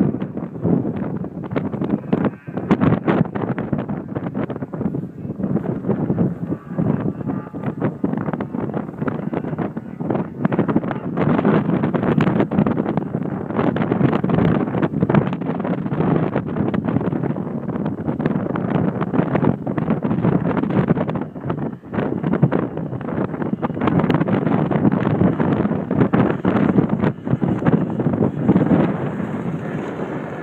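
Strong gusty wind buffeting the microphone, an uneven rumble that swells and dips throughout.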